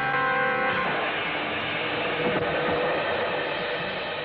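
Soundtrack music with sustained chords that breaks off less than a second in, giving way to a steady noisy rushing sound effect.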